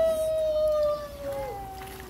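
A baby crying: one long, steady wail that falls away about a second and a half in, followed by a shorter, lower cry.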